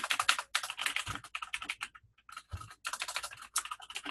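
Fast typing on a computer keyboard, a quick run of key clicks with a short pause about halfway through.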